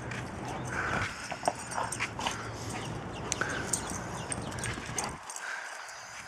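A Bouvier des Flandres running about on dirt and grass: scattered light clicks and scuffs of its movement over a steady outdoor hiss, with a few brief higher chirps.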